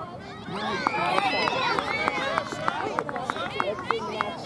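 Sideline spectators at a youth soccer game calling out and cheering, several voices overlapping with no clear words, and a quick run of hand claps in the second half.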